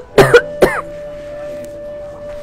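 A person coughing: three quick coughs in the first second.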